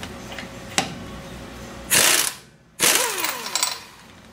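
Pneumatic impact wrench run in two short bursts, about two seconds in and again about a second later, to loosen a truck's lug nuts.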